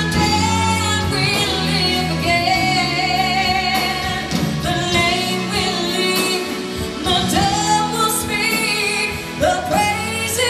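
A woman singing a song into a microphone over a PA, backed by a live band with drums, heard from the audience.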